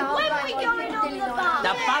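Many children chattering and talking over one another at once, with a man beginning to speak near the end.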